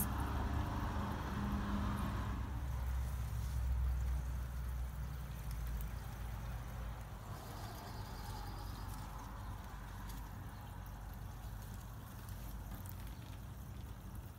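Outdoor background noise: a steady low rumble that slowly fades.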